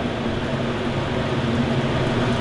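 Electric fan running with a steady whir and a low, even hum.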